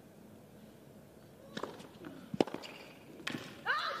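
Tennis ball struck with rackets in a short rally on a hushed court: a serve about one and a half seconds in, a sharper, louder hit just under a second later, and one more hit near the three-second mark.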